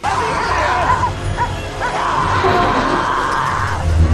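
Film soundtrack cutting in loud: a dramatic orchestral score over a crowd scene, with short cries and dog barks mixed in.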